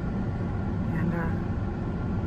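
Steady low hum and rumble inside a car cabin, with a brief murmur of a woman's voice about a second in.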